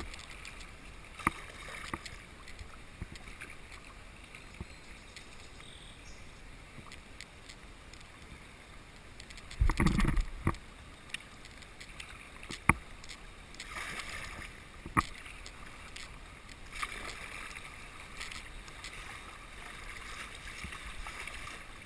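Kayak being paddled down a rippling river, with the water running past the hull and the paddle blades splashing. Now and then there is a sharp knock, and a loud, low, rumbling thump comes about halfway through.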